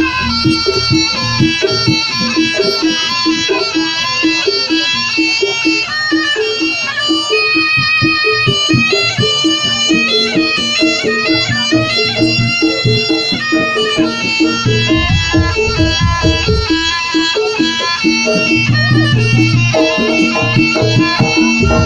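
Live traditional Javanese jaranan ensemble music: a sustained, wavering melody line over a steady drum beat, with heavier bass for a couple of seconds in the latter half.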